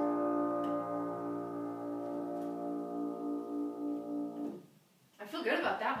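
Grand piano's final sustained chord ringing out and slowly fading, with a gentle pulsing in its tone. It stops about four and a half seconds in, and a voice follows near the end.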